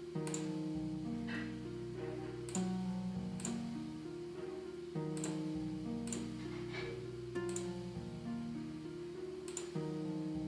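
A looping orchestral string melody with a bass line plays, its sustained chords changing every couple of seconds, with a few sharp high clicks. The strings run through the Soundtoys Crystallizer granular echo plug-in while its presets are switched, so the echo character keeps changing.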